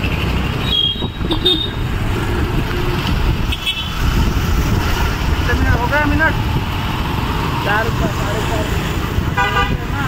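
Street traffic running steadily, with several short vehicle horn honks; the clearest honk comes just before the end.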